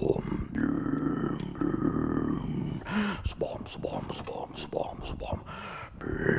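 A man's voice making wordless vocal sounds: two long held tones in the first half, then shorter grunts and breathy noises.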